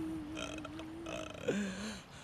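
A man wailing in grief: one long, slightly wavering cry that breaks and drops lower about a second and a half in, then stops.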